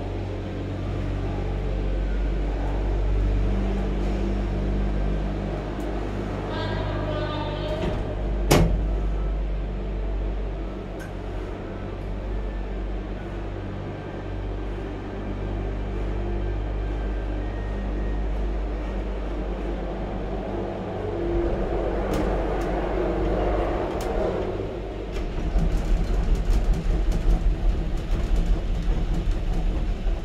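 Gondola cable car cabin moving through a station: a steady low hum of the station's drive machinery, with a single sharp clank about eight seconds in. From about twenty-five seconds in there is a rapid, uneven rattling as the cabin leaves the station.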